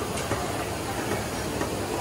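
Steady background noise of a busy restaurant buffet: an even, rushing room noise with no clear rhythm.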